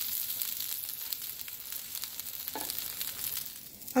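Corn tortilla quesadillas sizzling in a hot nonstick frying pan as they crisp, a steady hiss with small crackles that fades away near the end.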